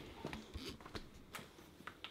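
Faint scattered rustles and light ticks as a canvas dust cover on an old car is handled.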